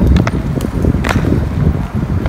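Trainers scuffing and landing on paving stones during a freerunning trick, a few sharp slaps about half a second apart near the middle, over a low, gusting rumble of wind on a phone microphone.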